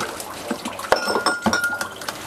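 Kitchenware being handled: a few light knocks and clinks, one of them ringing on briefly for under a second about a second in.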